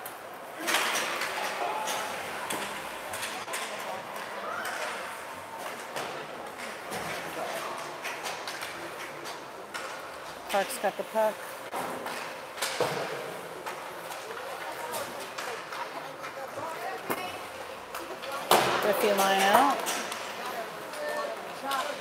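Ice hockey rink sounds: spectators talking and calling out, with scattered sharp knocks and clacks of sticks, puck and boards. The voices are loudest near the end.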